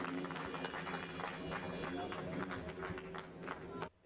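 A crowd clapping and cheering, with many voices mixed in and dense scattered hand claps.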